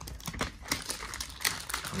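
Clear plastic wrap crinkling as it is pulled off a foam socket tray, a quick irregular run of small crackles and clicks.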